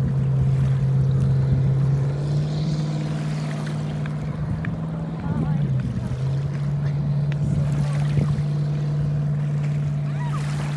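Motorboat engine running steadily at speed, its pitch stepping up slightly about two seconds in and dipping briefly around five and a half seconds before settling again.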